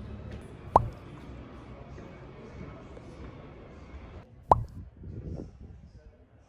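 Two short 'pop' sound effects, each a quick bloop that sweeps up in pitch, the first just under a second in and the second about four and a half seconds in. Beneath them runs a low background rumble and murmur that cuts off shortly before the second pop.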